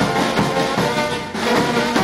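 Brass band music playing steadily, held notes over a regular beat.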